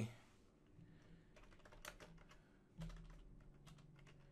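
Faint computer keyboard typing: a run of light single keystrokes starting about a second in.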